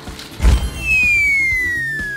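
Comedy sound effect for shrinking: a low thump about half a second in, then a long whistle-like tone sliding steadily down in pitch.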